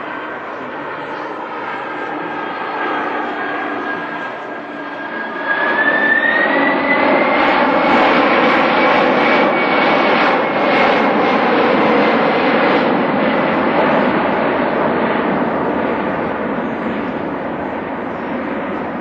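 Airbus Beluga's jet engines running in flight, a steady rushing roar with a high whine. About five seconds in it grows louder and the whine rises in pitch, then holds before easing off near the end.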